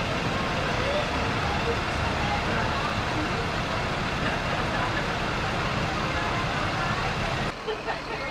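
Steady low rumble of school bus engines running at the curb, which drops away near the end.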